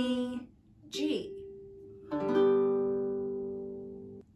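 Baritone ukulele: a single string rings about a second in, then the open G major chord (open D, G and B strings, E string at the third fret) is strummed just after two seconds in and rings, slowly fading.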